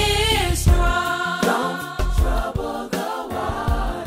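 Gospel-style song: a sung melody with long, bending notes over bass and a drum beat.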